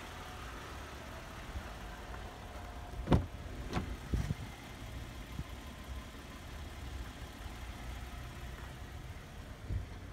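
Toyota Highlander's driver door being opened: a sharp latch clunk about three seconds in, then two softer knocks as the door swings open, over a steady low rumble.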